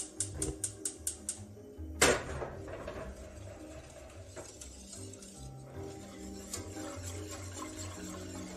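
Gas stove igniter clicking rapidly, about five clicks a second for a second and a half, then one loud clank about two seconds in from a stainless saucepan on the burner grate. Background music plays throughout.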